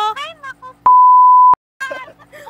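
A censor bleep: one loud, steady, pure tone at about 1 kHz, starting a little under a second in. It lasts about two-thirds of a second and cuts off abruptly into a moment of dead silence. Speech and laughter come before and after it.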